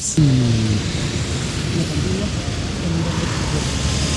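Street ambience: a steady noise of traffic with indistinct voices in the background.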